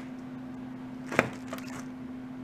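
A single sharp knock about a second in, as a bagged thin plastic sign is brought down against the OSB board of a model railroad layout, with faint rustling just after, over a steady low hum.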